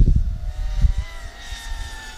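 FPV racing quadcopter's motors and propellers whining at mid throttle in forward flight, over a low rumble that fades about a second in. The whine holds several steady tones that sag slightly in pitch toward the end.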